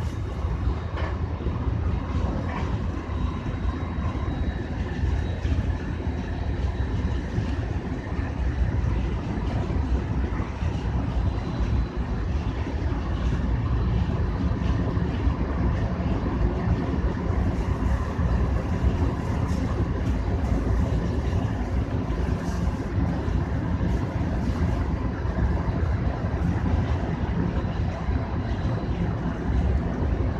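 Electric commuter train running at speed, heard from inside the front car: a steady rumble of wheels on the rails and running gear, with a faint steady whine above it.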